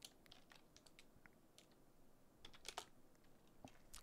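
Faint, irregular keystrokes on a computer keyboard, a dozen or so scattered clicks as code is typed.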